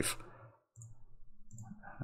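A few faint clicks of a computer mouse, the first just under a second in, over a low room hum.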